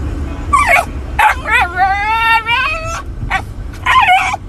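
Siberian Husky puppy vocalizing in a string of short yips and whiny yowls, with one drawn-out call of about a second near the middle that rises and then holds steady.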